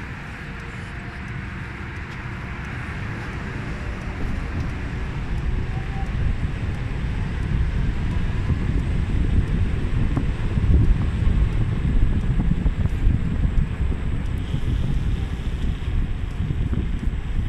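Wind buffeting the microphone of a phone carried on a moving electric motorcycle. The low rumble grows louder and gustier from about four seconds in.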